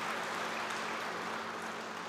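Audience applauding steadily, easing off slightly toward the end.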